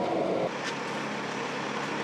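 Steady engine and road drone of an armoured military vehicle, heard from inside its cabin. The sound drops and changes character about half a second in, leaving a lower, steadier hum.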